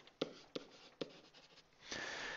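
Pen stylus writing on a digital writing surface: a few faint, sharp taps and light strokes as a word is handwritten.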